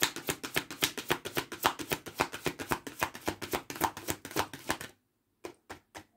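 A deck of Archangel Michael oracle cards being shuffled by hand: a fast, even patter of card clicks, about eight or nine a second, that stops about five seconds in, followed by two or three single card taps.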